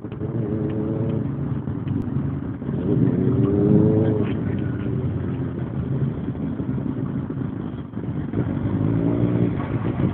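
Engine revving up and easing off several times over steady road rumble, heard from a moving car; the revving is loudest about four seconds in, with another rise near the end as the sport bike comes alongside.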